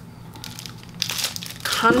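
Faint rustling and crinkling as makeup brushes are handled, one swept across the cheek, over a low steady room hum.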